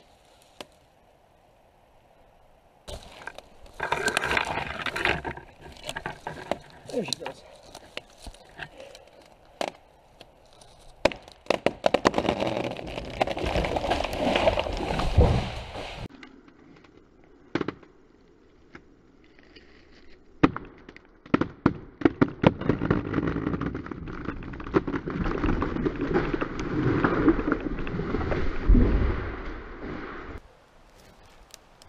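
A dead arbutus (madrone) tree breaking loose and falling: a run of sharp cracks as the hinge wood splits, a long crash through the branches, and a heavy thud of the trunk hitting the ground near the end. Before that, close rustling and knocking right by the microphone.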